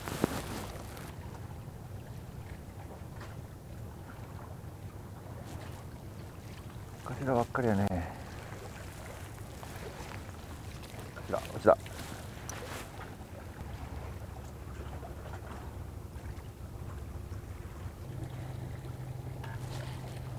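Steady low rumble of wind on the microphone by the open sea, with a man's voice heard briefly twice, about seven and eleven seconds in.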